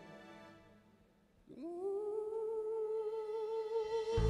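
Male singer holding one long wordless note, gliding up into it about a second and a half in and sustaining it with a slight vibrato, after the soft accompaniment has died away almost to nothing.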